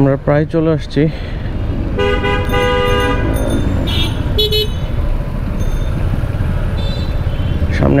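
Vehicle horns honking in dense street traffic: one long toot about two seconds in, then a shorter, higher toot about a second later, over a steady low rumble of traffic and riding noise.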